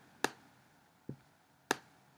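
Two sharp clicks about a second and a half apart, with a soft low knock between them, made while strokes are drawn on a digital drawing board.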